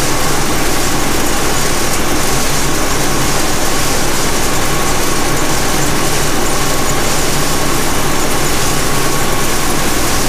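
Gleaner F combine shelling corn, heard from inside the cab: a loud, steady machine noise from the engine, threshing cylinder and corn head, with a steady high whine running through it.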